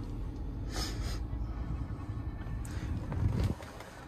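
Low steady rumble of the truck's 6.2-litre gasoline V8 idling, heard from inside the cab, with a brief rustle about a second in. The rumble quietens shortly before the end.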